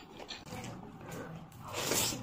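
Close-miked eating by hand: a mouthful of rice and curry being chewed with small wet mouth clicks, then a louder rushing noise near the end as the next handful of rice goes to the mouth.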